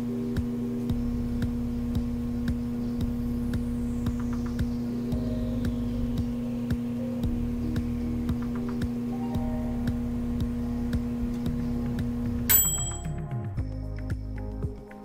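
Microwave oven running with a replacement magnetron: a steady transformer hum, a little loud because the outer cover is off, which the repairer calls normal, with the mechanical timer ticking about twice a second. Near the end the hum cuts off and the timer bell dings as the cycle finishes.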